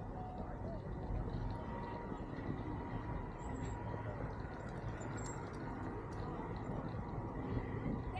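Steady low rumble of a wheelchair rolling along a paved path, with wind on the microphone and a faint steady whine running underneath.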